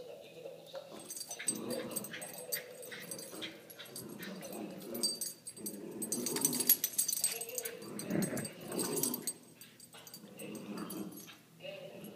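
Two West Highland White Terrier puppies tussling in a tug-of-war over a plush toy: dog vocal noises mixed with scuffling and rustling, loudest around the middle.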